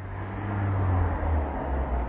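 A low rumble that swells over about the first second and then holds steady.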